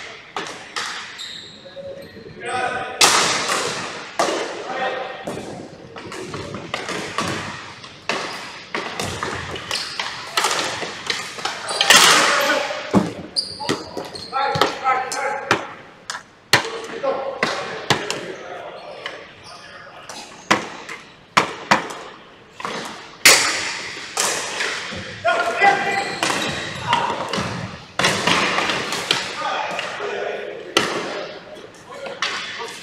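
Ball hockey play on a hardwood gym floor: repeated sharp clacks and thuds of sticks striking the ball and floor, echoing in the large hall, with players' indistinct shouts in between.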